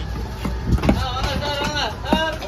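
Large fish-cutting knife striking a wooden chopping block a few times in quick succession, under a steady low rumble and a voice in the background.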